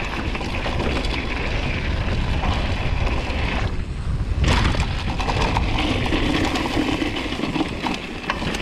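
Mountain bike riding down a rough dirt trail: wind buffeting the microphone over the rattle of tyres, chain and frame on the bumpy ground. A little before four seconds in the rattle briefly falls away, then returns with a sharp knock.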